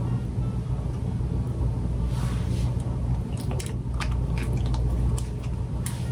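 Lip gloss being applied with a wand applicator, the lips smacking and pressing together in a series of small sticky clicks over the second half, over a steady low hum.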